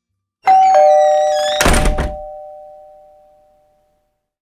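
Two-note falling chime like a doorbell's ding-dong, the notes ringing on and fading away over about three seconds, with a short thump about a second and a half in.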